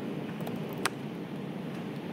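A single laptop keystroke click about a second in, over steady low room noise.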